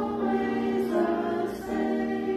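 A small group of women singing a church song together, holding long notes, moving to a new note about three-quarters of the way through.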